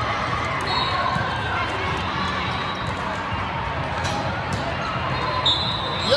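Volleyball rally in a large, echoing hall: a steady wash of crowd chatter with a few sharp hits of the ball. A short high squeak comes near the start and another near the end.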